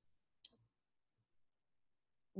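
Near silence, broken once by a single short, sharp click about half a second in.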